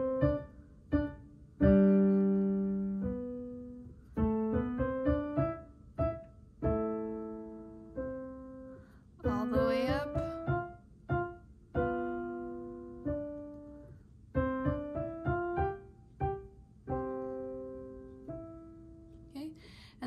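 Kawai piano played in short phrases of notes and chords that step up the keyboard, each struck loud and dying away softer: a loud-to-soft dynamics exercise.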